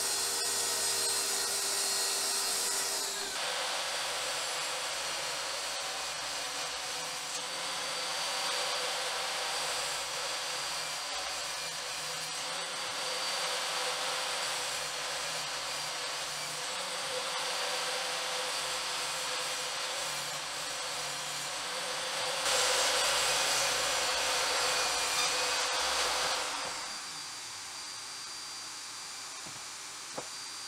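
Power saws cutting wood sheet: a plunge track saw running with a steady whine for the first three seconds or so, then steady saw noise that grows louder for about four seconds near the end before dropping away.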